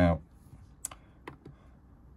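A few light clicks from the push-and-turn control knob on a Dometic refrigerator's control panel as it is worked to step back through the menu. The sharpest click comes just under a second in.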